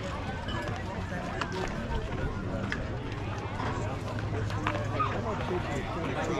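Indistinct talk and chatter from spectators, over a low steady hum.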